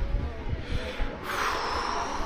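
Wind buffeting the microphone in an uneven low rumble, with a short breathy rush of noise a little past halfway.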